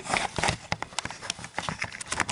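Camera handling noise as the camera is being set back onto its tripod: a string of irregular knocks and clicks.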